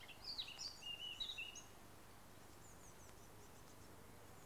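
Faint bird chirps: a quick run of short, pitch-sliding calls in the first second and a half, a few fainter ones around two seconds in, then only a low hiss.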